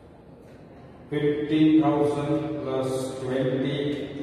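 A man's voice in drawn-out, sing-song speech, starting about a second in after a quiet lull, reading figures aloud while working a calculator.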